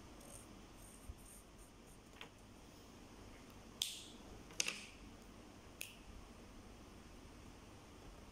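A few sharp plastic clicks against quiet room tone, the clearest three between about four and six seconds in, from felt-tip markers and their caps being handled, capped and set down.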